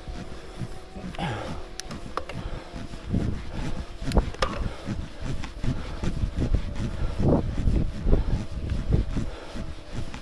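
Road bike climbing a steep hill, with wind rumbling on the handlebar-mounted microphone, a faint steady hum, and a few sharp clicks about two and four seconds in, likely gear shifts as the rider changes down for the steep section.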